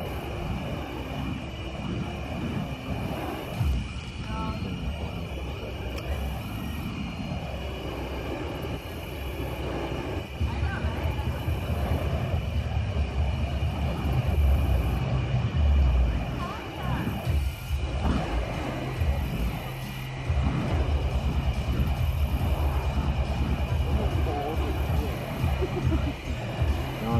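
Burning fire poi whooshing and roaring as they are swung around, in rhythmic pulses with each pass. The pulses grow louder and more even in the second half.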